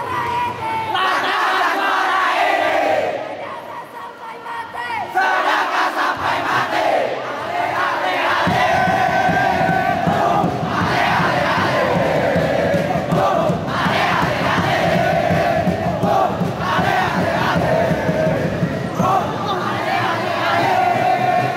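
A crowd of young male supporters chanting and shouting together, their voices holding sung lines that rise and fall in pitch. About eight seconds in, a dense low rumble joins, and the chanting stays loud and steady to the end.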